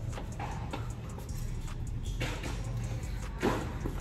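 Faint background music over the steady hum of a shop, with a couple of brief rustles about halfway through and near the end.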